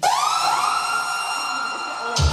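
An electronic siren-like tone, sweeping up in pitch over about half a second and then held steady, opening a dance track.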